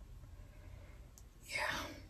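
Quiet room tone with a low hum, then a woman's soft, breathy "yeah" near the end.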